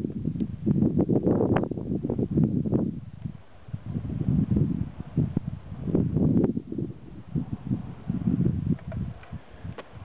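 Wind buffeting a handheld camera's microphone: irregular low rumbling gusts that come and go, with a few sharp clicks.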